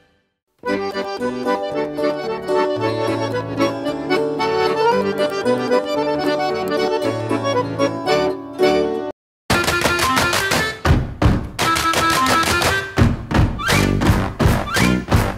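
Accordion music playing sustained chords, starting after a brief silence. After a short break about nine seconds in, a livelier dance tune with a strong, regular beat begins.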